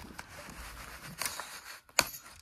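Faint scraping and rustling of a small knife working an aluminium S-biner carabiner free of its cardboard packaging card, with a few small clicks and one sharp click near the end.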